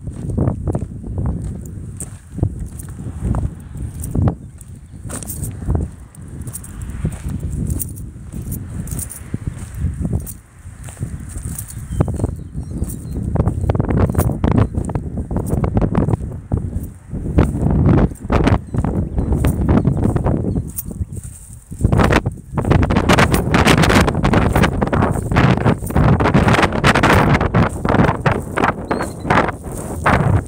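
Footsteps crunching on gravel and dry grass as someone walks, with wind rumbling on a phone microphone; the crunching gets denser and louder in the second half.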